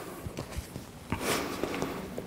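Footsteps and shuffling of trainers on a wooden sports-hall floor, with a few soft knocks and a brief rustle as a person gets up off the floor.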